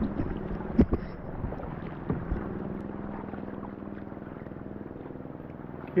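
Kayak paddling on calm sea: two sharp knocks of the paddle against the plastic kayak hull, about a second in and again after two seconds, over a steady low drone and light wind on the microphone.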